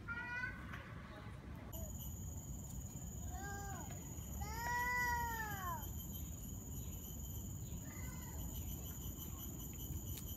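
A young child's high voice giving several drawn-out calls that rise and fall in pitch, the longest and loudest one about halfway through, over a steady high-pitched buzz that sets in about two seconds in.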